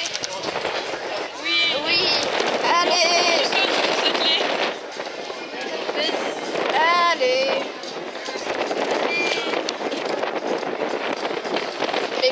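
Voices of spectators talking and calling out in bursts, loud but not clear enough to make out, over steady outdoor background noise.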